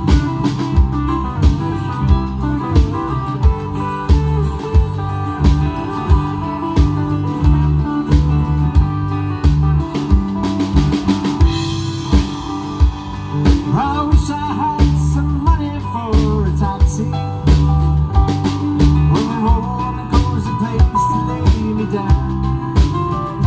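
Rock band playing live outdoors on a drum kit, bass, guitars and keyboard with a steady beat, in a long instrumental break. From about the middle, an electric guitar plays a lead with bent notes over the band.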